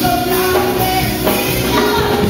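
A woman singing a Spanish-language worship song into a microphone over instrumental accompaniment, holding long notes.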